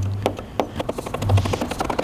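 A plastic squeegee chattering against wet tint film on a headlight lens as the film is tacked down, a rapid run of small clicks, with a low hum at the start.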